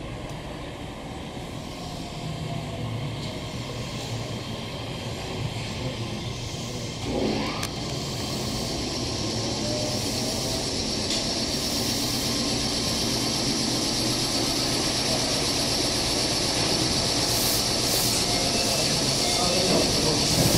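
Meitetsu 3500 series electric train running into the station and braking to a stop, growing louder as it draws in. A tone glides up in pitch about seven seconds in, and a high hiss of braking builds over the second half, with short bursts of hiss near the end.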